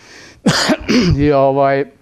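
A man clearing his throat about half a second in, followed by a held, even voiced sound.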